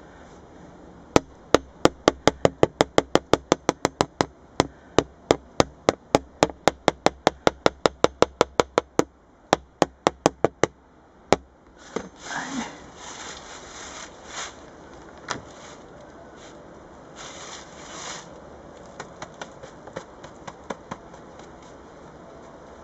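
A quick run of sharp clicks, about four a second, for some ten seconds, then rustling and scraping as the plastic Varroa diagnosis board is handled.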